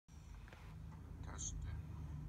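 A faint whispered voice in short fragments over a steady low rumble.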